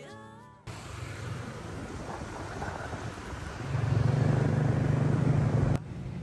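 Street traffic noise, a steady hum of passing vehicles. From a little past the middle, a motor vehicle's engine running close by adds a louder low hum, which stops just before the end.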